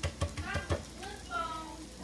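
A knife clicks and scrapes a few times against a plate and lettuce leaves as mayonnaise is spread on romaine. A voice speaks indistinctly over it.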